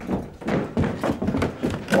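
A run of dull thunks, several over two seconds.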